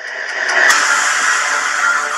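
Film-trailer sound effects: a loud rushing, engine-like noise that swells over the first half-second and then holds steady.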